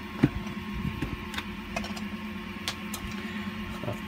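Hollow 3D-printed plastic parts being handled and set down: a sharp knock about a quarter second in, then a few lighter clicks, over a steady low hum.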